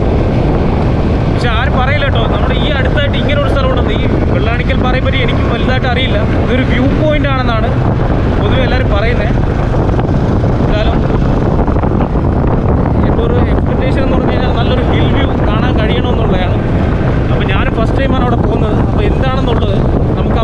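Steady, loud rumble of wind on the microphone over a running vehicle, with a voice-like warbling that comes and goes throughout.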